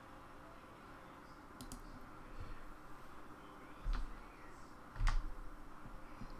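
A few separate keystrokes on a computer keyboard, the loudest about five seconds in, over a faint steady room hum.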